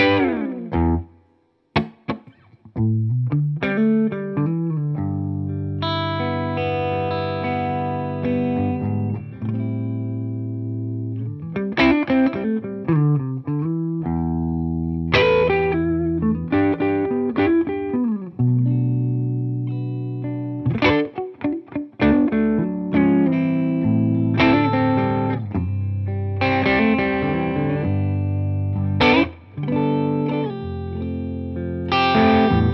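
Tokai Love Rock LS128, a Les Paul–style solid-body electric guitar, played through a Hamstead valve amp: strummed chords and picked riffs, with several chords left to ring for two or three seconds. Playing begins after a short pause at the start and breaks off briefly a few times.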